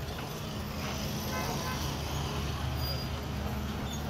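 Street traffic dominated by the steady running of nearby motorcycle engines, with faint voices in the background.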